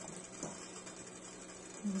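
Faint stirring in a stainless steel bowl of melted chocolate as a frozen banana on a stick is swirled through it with a wooden spoon, with one faint knock about half a second in, over a steady low hum.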